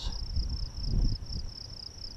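Insects chirping in the grass: a steady high trill, pulsed several times a second, with a low rumble on the microphone near the middle.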